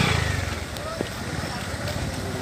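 A motorcycle engine passing close by and fading away in the first half second, then the murmur of a crowd talking in the background, with a single sharp click about a second in.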